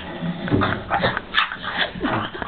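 A man's voice making broken, animal-like noises in imitation of an attacking Tasmanian devil, with a sharp click about one and a half seconds in.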